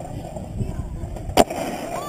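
Skateboard wheels rolling on concrete, a steady low rumble, with one sharp clack of the board about one and a half seconds in.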